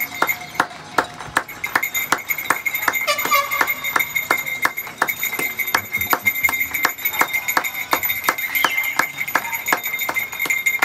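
A bell struck rapidly and repeatedly, about four strikes a second, its ringing tone held between strikes.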